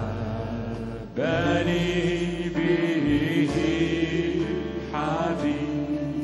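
A man's voice singing a slow Arabic worship hymn in long, held phrases, with electric bass and band accompaniment underneath; a new phrase begins about a second in.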